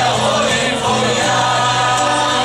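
A large mixed group of Puyuma men and women singing together in chorus, loud and unbroken.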